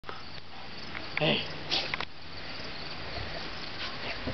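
A steady, high insect trill in the background, with two short noisy bursts just before and at about two seconds in.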